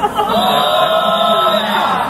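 A crowd of danjiri rope-pullers chanting together, many voices joined in one long held call.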